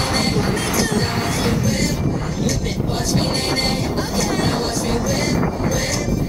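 Snowboards sliding and scraping over packed snow at speed, a steady rumbling hiss.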